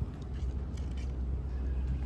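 Steady low outdoor background rumble, with a few faint clicks.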